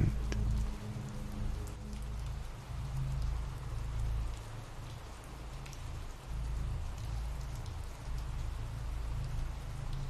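Steady rain ambience, an even patter, with a low sustained drone of dark background music underneath.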